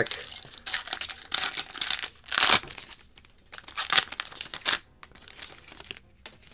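Glossy foil wrapper of a trading card pack being torn open and crinkled by hand: a run of irregular crackling rips, loudest about two and a half seconds in.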